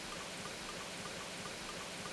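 Steady sizzling of ground meat and vegetables frying in a hot skillet.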